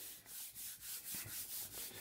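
Hand rubbing over a sheet of paper pressed onto a gel printing plate, burnishing it down so the paint lifts onto the paper. It is a faint rubbing in repeated strokes, a little over two a second.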